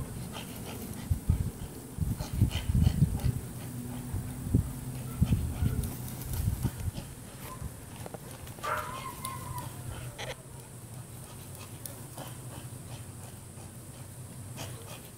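A puppy chasing and tugging at a flirt pole lure, making dog sounds, with loud irregular low thumps and rumbles over the first half. A short higher-pitched call comes about nine seconds in.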